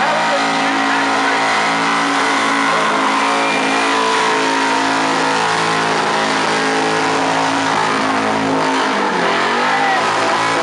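Supercharged ute engine held at high, steady revs during a burnout, with the rear tyres spinning against the bitumen. About nine seconds in, the revs drop briefly and then climb back up.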